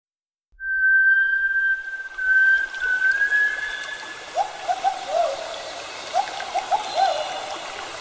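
Bird-like whistled calls over a steady trickle of running water: one long, slightly rising whistle, then two groups of short up-and-down whistled notes.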